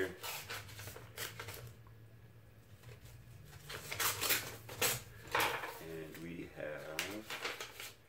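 A paper mailing envelope being opened and handled: two spells of paper rustling and crinkling, the second about four seconds in.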